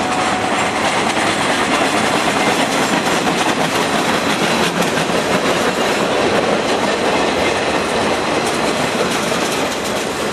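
Freight cars of a passing train rolling by on steel wheels: a steady, loud noise of wheels on rail as container well cars, gondolas and a tank car go past.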